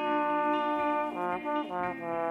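Brass section of a 1970s Soviet pop band, played from a vinyl record: a held chord for about a second, then a few short punchy notes and a new chord near the end.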